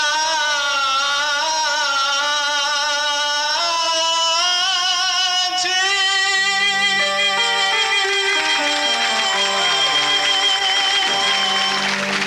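A man singing long, held notes with a wavering vibrato into a handheld microphone, over an instrumental backing track. In the second half, lower accompaniment notes step down in a run beneath the voice.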